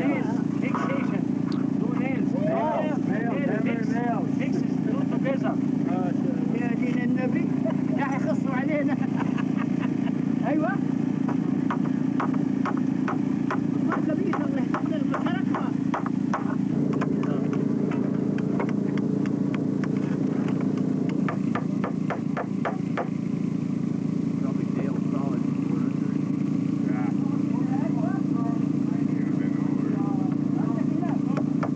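A hammer tapping a nail through bottle-cap washers into a wooden board, with quick light strikes of about four a second from about a third of the way in. Under it run a steady low hum and background voices.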